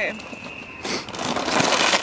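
Rustling and crinkling of a plastic chip bag being pulled out of a backpack, a loud rustle starting about a second in.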